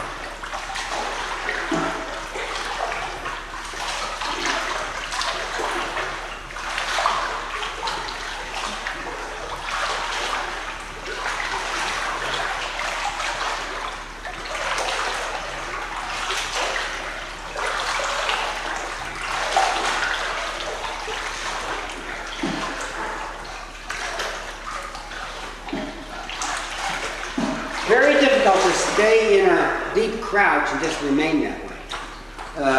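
Pool water sloshing and splashing as a person moves through it, pushing plastic gallon jugs under and along the surface, in repeated surges every second or two.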